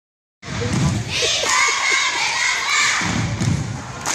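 Young cheerleaders shouting a cheer together, starting about a second in, over heavy thumps of stomping on the wooden gym floor and the noise of the crowd.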